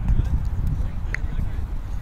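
Wind rumbling on the microphone through a roundnet rally, with a few faint knocks of the small rubber ball being hit and players moving on the grass.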